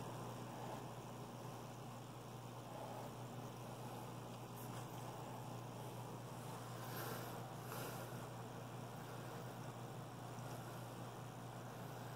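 Quiet room with a steady low hum, and a few faint, soft scuffles about halfway through from a small puppy tussling with a plush toy on a rug.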